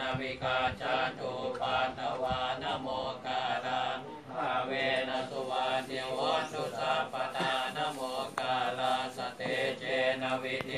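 Several Thai Buddhist monks chanting Pali protective verses (parittas) together in a steady, even recitation.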